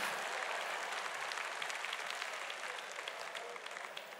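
A large congregation applauding, a dense patter of many hands clapping that gradually dies away.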